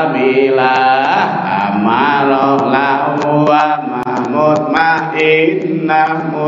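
A man chanting, over a microphone, a melodic Arabic verse that names the seven grades of the soul (amarah, lawwamah, mulhimah, muthmainnah, radhiyah, mardhiyah, kamilah), with long held, gliding notes.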